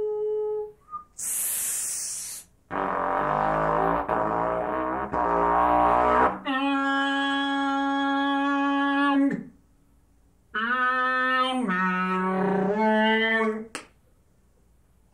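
Solo trumpet playing avant-garde extended techniques: a short held note, a burst of hissing air, a dense rough passage with several pitches sounding at once, then a long steady note that sags in pitch as it stops. After a short pause come a few lower notes stepping down and back up.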